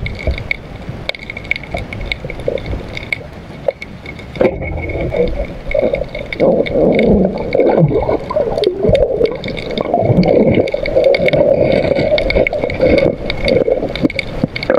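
Water gurgling and sloshing, growing loud and churning about four and a half seconds in and staying so, over a faint steady high whine.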